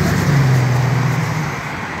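A car driving past on the street: a steady low engine note over tyre and road noise, fading as it moves away.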